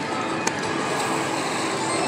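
Casino-floor din: electronic slot-machine music and jingles over crowd noise, with a single sharp click about half a second in.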